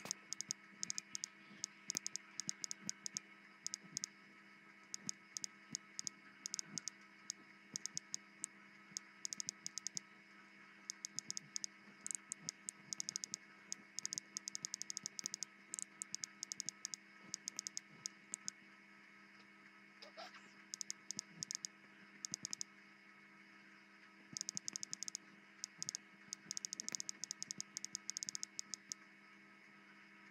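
Phone touchscreen keyboard tap clicks in quick runs with short pauses, as a message is typed, over a faint steady electrical hum. A short rising tone sounds about two-thirds of the way through.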